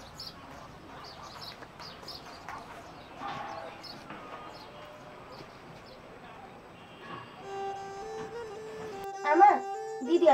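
Outdoor village ambience with short, repeated high chirps from birds. About seven seconds in, steady musical tones fade in, and a voice starts singing loudly near the end.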